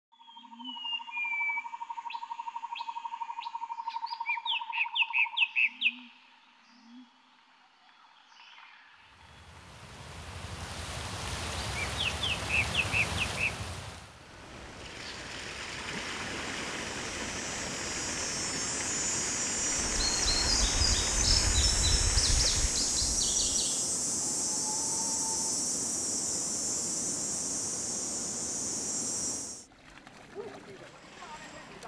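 Birds chirping and calling over countryside ambience, with a steady trill in the first few seconds. About nine seconds in, a steady rushing noise sets in; later it carries a high steady hiss, and bird chirps continue over it.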